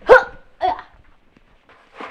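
A boy's two short grunts of effort about half a second apart, the first loud and sharp, as he hops up onto a kitchen counter.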